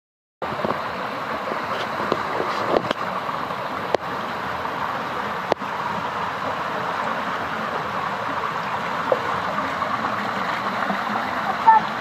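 Water flowing steadily along a narrow stone channel, an even rushing, with a few sharp clicks in the first half.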